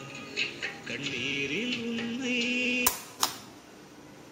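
A song with singing and instrumental backing plays from a cassette on a restored tape-deck mechanism through a small speaker. About three seconds in there are two sharp clicks about a third of a second apart and the music stops, leaving a faint hiss.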